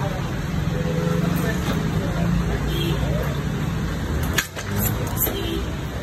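Indistinct talk over a steady background hum, with one sharp click about four and a half seconds in.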